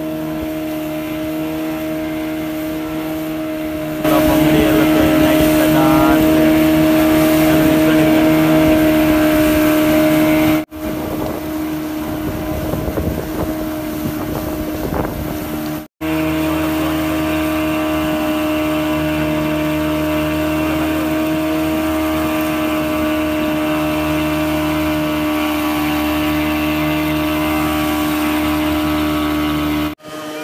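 A fishing boat's engine running steadily at one constant pitch, with water and wind noise over it. The sound cuts out briefly twice, about eleven and sixteen seconds in.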